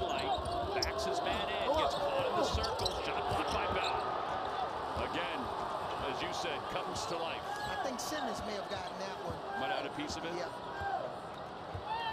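A basketball being dribbled on a hardwood court, with repeated short squeaks of sneakers on the floor as players move.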